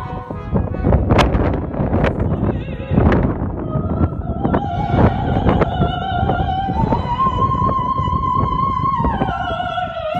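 Operatic soprano singing with a symphony orchestra. Several loud accented orchestral strikes come in the first three seconds. Then the soprano holds a long note with vibrato, steps up to a higher held note about seven seconds in, and drops back down near the end.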